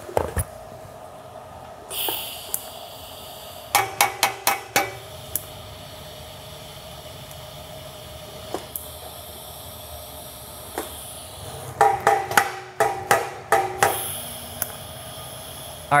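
TIG welding torch tacking a steel header collector: short arc bursts, a quick cluster of about five about four seconds in and a longer run of seven or eight near the end, over a steady background hiss.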